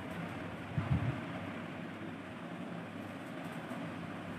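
Steady whirring room noise from a ceiling fan, with a brief low sound just under a second in.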